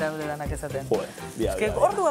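People's voices over cheese sizzling as it fries in a hot frying pan. The voices are the loudest sound; the frying sits underneath.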